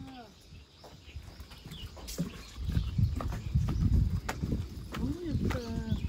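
Scattered sharp knocks of footsteps on a wooden boardwalk, with a heavy low rumble on the microphone through the middle and a brief voice near the end.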